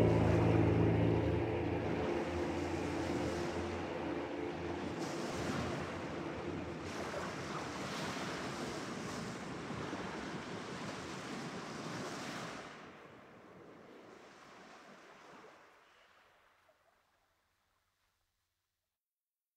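The music's last held chord dies away in the first couple of seconds, leaving sea surf washing in uneven surges. The surf drops back about two thirds of the way through and fades out to silence near the end.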